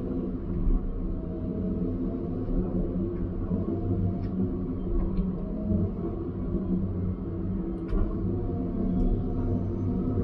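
Diesel engine of heavy logging equipment running steadily, heard from inside the machine's cab, with a low drone whose pitch wavers slightly as the hydraulics are worked. A few faint clicks are heard along the way.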